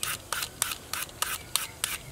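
A toothed julienne shredder scraped down a hard green fruit in quick, even strokes, about three a second, each stroke a short rasping scrape.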